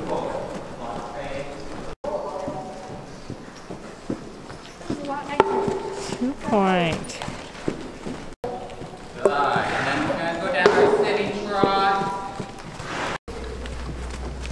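Unclear voices over the faint hoofbeats of a horse trotting on the arena's dirt footing. The sound drops out briefly three times.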